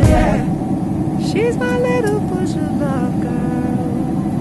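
Steady low drone of a jet airliner cabin in flight, with a voice briefly heard over it in the middle.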